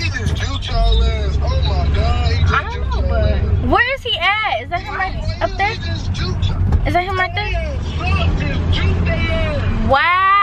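Low rumble of a car's engine and road noise heard from inside the cabin, under people's voices calling out. The rumble drops away about four seconds in and comes back later.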